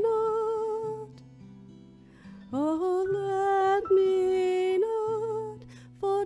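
A worship song sung with instrumental accompaniment. There is a long held sung note, then a short soft stretch of low instrumental notes, then another long held sung phrase that fades near the end.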